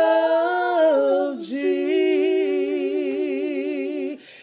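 A woman singing unaccompanied gospel, a wordless melisma: a phrase that falls in pitch, a quick breath about a second and a half in, then a long held note with wide vibrato.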